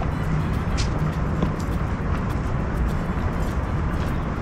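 Steady low rumble of outdoor background noise, with no distinct events standing out.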